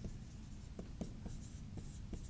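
Marker writing on a whiteboard: a series of faint, short strokes and taps as characters are written.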